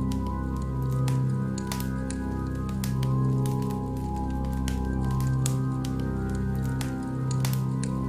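Slow background music of sustained low, organ-like chords, with the scattered crackle and pop of a wood bonfire over it.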